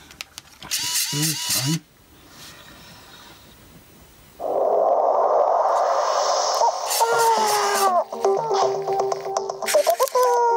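Cubee robot speaker powering on and playing electronic sounds through its own speaker: a short pitched, gliding jingle or voice prompt, a pause, about two and a half seconds of loud rushing noise, then electronic music with falling glides.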